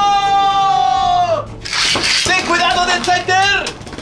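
A person's voice holding one long, high cry that drops off about a second and a half in, then a short hiss, then a shorter, wavering vocal call.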